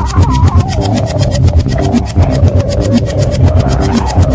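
Electronic music with a fast, steady beat, heavy bass pulses and a wavering synth line.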